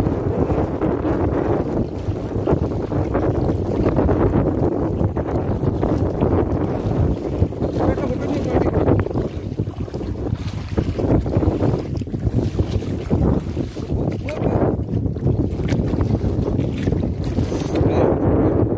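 Wind buffeting the microphone, with water splashing and sloshing as a hooked rohu thrashes in shallow water and a person wades through it. There are short splashes now and then, more often in the second half.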